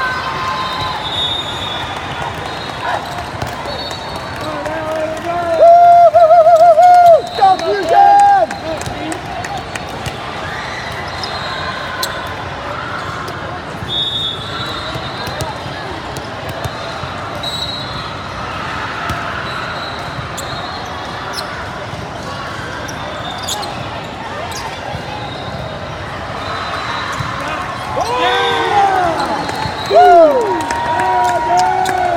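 Volleyballs being hit and bouncing on the courts of a busy, echoing sports hall, over steady crowd chatter, with short high whistle blasts. A loud, drawn-out shout comes close by about six seconds in. Several voices shout again near the end.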